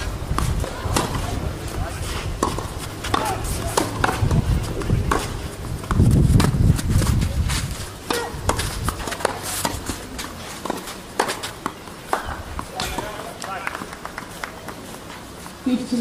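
Tennis rally on a clay court: racquets striking the ball back and forth, heard as sharp, repeated knocks. A low rumble underlies the first half and is loudest about six to seven and a half seconds in.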